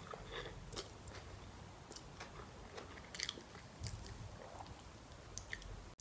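A person chewing a mouthful of noodles, with scattered soft, wet mouth clicks and a few slightly louder clicks about halfway through.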